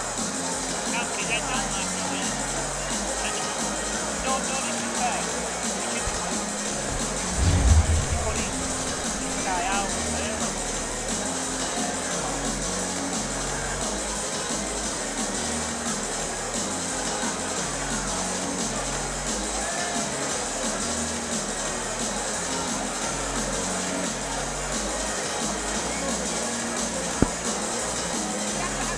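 Music with a repeating low drum pattern under the chatter of a crowd in a hall, with a louder low thump about eight seconds in and a sharp click near the end.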